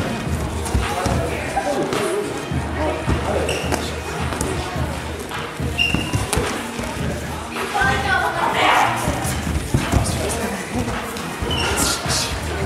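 Repeated dull thuds of gloved punches and kicks landing during kickboxing sparring, with footfalls on the hall floor, echoing in a large sports hall amid background voices.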